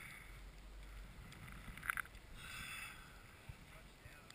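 Faint wind on the microphone and a low rumble on a moving chairlift, with a short high squeak about two seconds in.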